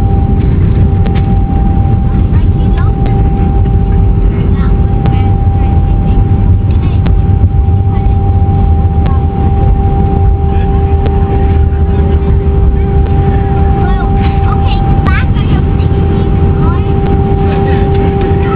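Jet airliner cabin noise just after landing: a loud, steady low rumble with two steady engine tones, one an octave above the other, as the aircraft rolls along the ground.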